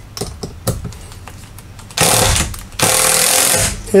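A few faint clicks, then a cordless power driver runs in two bursts of under a second each, driving a sheet metal screw into an aluminium bracket.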